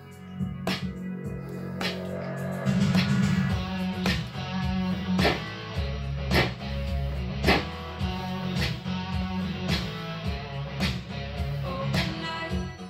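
A song with bass and guitar plays while a SynClap analog handclap generator fires synthesized handclaps in time with it, about one a second, triggered by taps on its piezo pickup.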